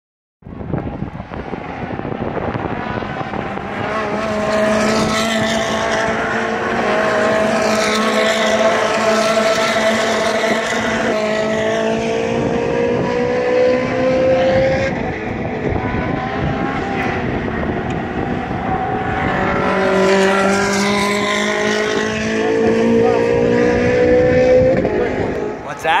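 Race car engines passing on a road circuit, in two long waves of accelerating cars whose engine pitch rises slowly: the first from a few seconds in until about halfway, the second near the end.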